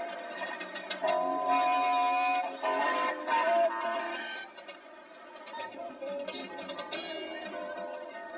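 Live rock-band music with an electric guitar playing a melodic line of held notes. The music drops quieter about halfway through, then picks up a little.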